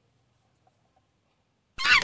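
Near silence with a faint low hum, then about three-quarters of the way through a loud, high-pitched voice starts abruptly.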